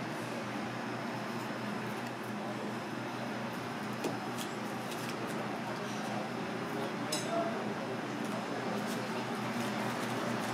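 Steady background noise of a small kitchen: a constant low hum with faint, indistinct voices and a few light clicks.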